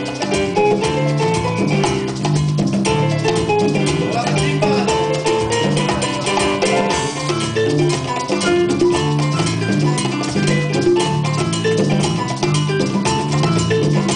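Live Cuban salsa band playing: congas and other hand drums over electric bass guitar, with a repeating bass line and a steady dance rhythm.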